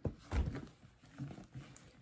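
Handbag being handled: a sharp click, a soft thump just after, then faint rustling as the bag is lifted and its handles and strap are shifted.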